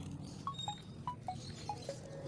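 A run of about six short, bright chime notes, one every quarter to half second, stepping mostly downward in pitch.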